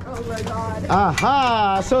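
A person's voice giving a drawn-out, wordless call about a second in, its pitch rising and then falling, over a steady low background rumble.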